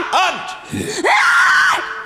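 A woman screaming during a deliverance prayer: a short run of rapid repeated vocal syllables, then one long, high, held scream about a second in.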